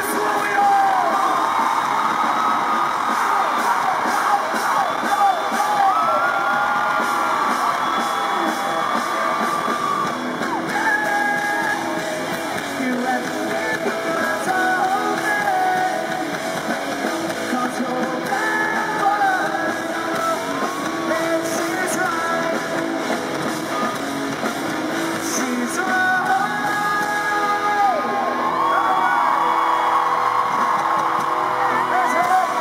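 Pop-punk band playing live in an arena: electric guitars, bass guitar and drums with sung vocals, heard through a camera's microphone from the crowd.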